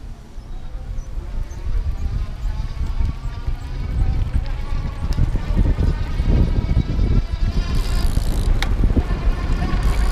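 Wind rumbling on the microphone of a moving electric bike, growing louder as it picks up speed, with a faint steady whine from its 350-watt geared rear hub motor giving sport-mode assist. A single click near the end.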